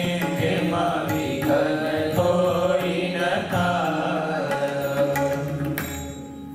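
Devotional mantra chanting sung to musical accompaniment, in a steady melodic flow that breaks off just before the end.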